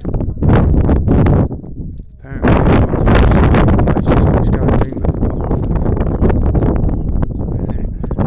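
Wind buffeting the phone's microphone in heavy, uneven low rumbling gusts that ease off briefly about two seconds in.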